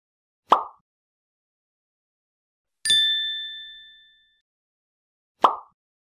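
Sound effects of an animated logo intro: a short pop, then a bright bell-like ding about three seconds in that rings and fades out over about a second, then another short pop near the end.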